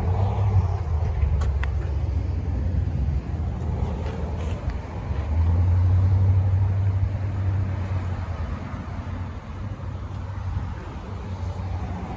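Low rumble of passing road traffic, swelling for a few seconds about halfway through.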